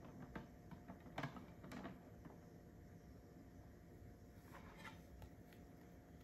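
Near silence with a few faint clicks and taps of hard plastic graded-card slabs being handled and set down on a wooden table, the clearest about a second in.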